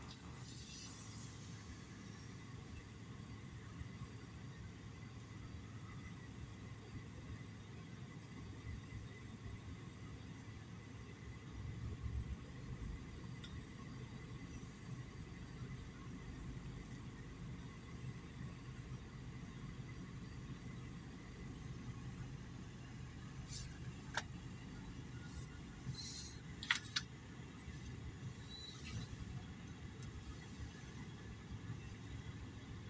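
Low, steady rumble of a freight train's cars rolling past at a distance, heard from inside a car. A few sharp clicks come near the end.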